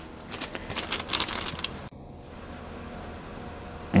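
A clear plastic bag crinkling and rustling as a bottle of glass polishing compound inside it is handled, for about a second and a half. After that there is only a faint steady hum.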